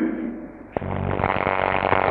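The sung line's echo dies away, then about a second in a man's rough, rasping throat sound starts suddenly close to the microphone and runs on until his speech resumes.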